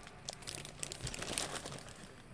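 Clear plastic poly bag crinkling as hands handle a bagged basketball jersey, a run of short, irregular rustles.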